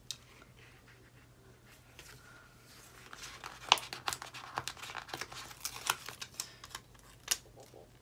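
Paper sticker sheets being handled, a sticker peeled off and pressed onto a planner page: a run of crinkles and small sharp crackles that begins about three seconds in, after a quiet start with a single click.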